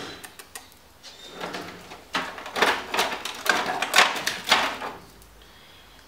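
Small packaging being handled and unwrapped by hand: a few light clicks, then about three seconds of irregular crinkling and rustling, which stop shortly before the end.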